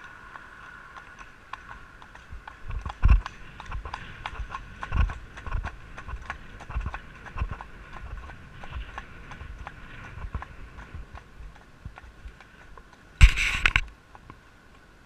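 A ridden horse's hooves clip-clopping on a paved lane, a steady run of clicks with a few heavier thumps. Near the end a brief, loud rush of noise covers everything.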